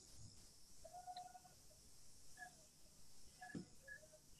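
Near silence: room tone, with a few faint, short chirping tones and one soft tap.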